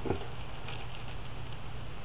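Faint small ticks and rustling of fingers pressing a plastic urostomy flange and its adhesive onto the skin, over a steady low hum.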